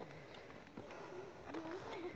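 Quiet outdoor background with a few faint taps of footsteps on bare rock, and a low murmur of a voice near the end.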